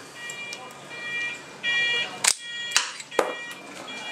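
A few sharp metallic clicks in the second half as the brake lever and its pivot bushing are handled at the lever perch. Over them, a high buzzing tone sounds in short stretches of about half a second.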